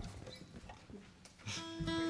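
Acoustic guitar: quiet at first, then a chord is strummed about one and a half seconds in and rings on.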